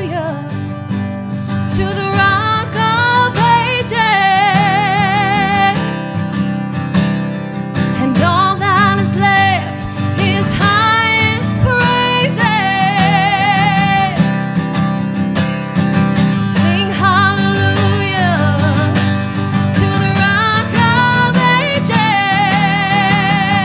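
Woman singing a worship song with long held notes that waver in vibrato, accompanied by strummed acoustic guitar.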